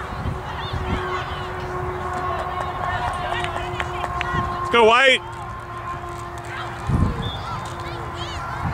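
Wind rumble and faint distant voices across an open playing field. About five seconds in comes one short, loud, wavering call, and about seven seconds in a low thump.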